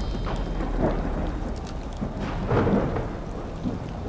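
Deep, steady rumbling drone with two swelling surges of noise, a smaller one about a second in and a louder one about halfway through: thunder-like sound-design ambience.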